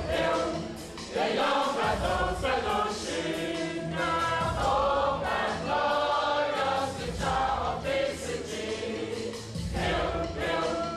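A large choir of mostly women's voices singing together in phrases.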